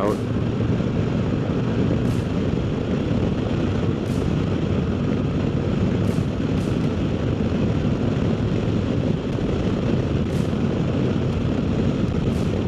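Wind rushing over a helmet-mounted microphone, with a 2024 Harley-Davidson Road Glide's Milwaukee-Eight 117 V-twin running steadily underneath while cruising in sixth gear at about 60 mph.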